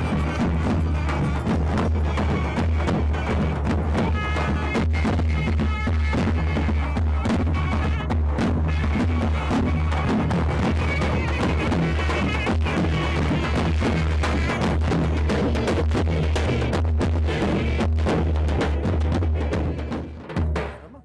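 Turkish folk dance music driven by a davul, the large double-headed bass drum, beaten in a steady, dense rhythm, with a higher melody line coming and going above it.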